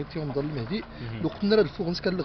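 A man talking: speech only.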